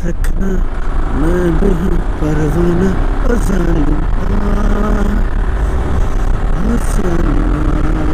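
A man humming a tune in long held and sliding notes, over the steady rumble of wind and the motorcycle's engine while riding; the bike is a Yamaha R15 with a single-cylinder engine.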